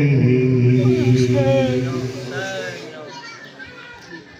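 A man's voice reciting a soz, an unaccompanied mournful chanted lament, holding a long low note that dies away over the last two seconds.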